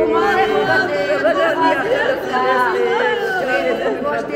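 Speech: a woman talking, with other voices in the room.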